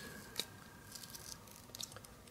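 Faint peeling of the backing off the double-sided adhesive tape on the underside of a plastic solderless breadboard, with small crackles of the tape letting go, one about half a second in and another near the end.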